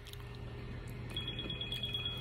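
A high electronic chime: two steady tones sound together from about a second in and hold for over a second, the upper one with a quick flutter, over a faint steady low hum.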